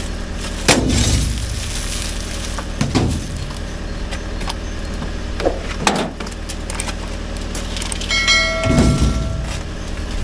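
Old uPVC window frames and glass being thrown into a metal skip: a series of clattering, crashing impacts, the loudest with breaking glass about a second in, over a lorry engine running steadily. Near the end a short bell-like chime rings.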